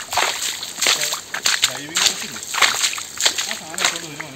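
Irregular close rustling and crunching of footsteps and brushing through wet forest undergrowth, with quiet voices in the background.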